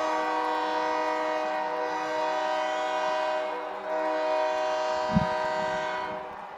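Stadium train-style air horn sounding a long, steady multi-note chord to celebrate a touchdown, with a short dip a little before four seconds in and a sharp click near the end.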